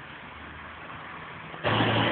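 A motor vehicle's engine running steadily, becoming suddenly much louder about one and a half seconds in.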